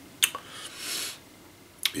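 Lip smacks and mouth clicks from a man who is savouring a sip of stout. There are two sharp smacks about a quarter second in, a short breath around the middle, and another click just before he speaks again.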